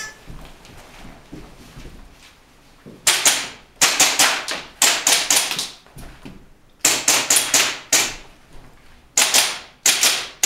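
Airsoft pistol firing in quick strings of sharp pops with a short ring: a first string about three seconds in, a second about seven seconds in, and a third near the end.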